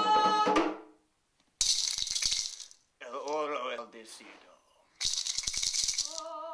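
A held sung note ends about a second in. Then a hand rattle is shaken in two bursts about a second long each, with a low voice between them.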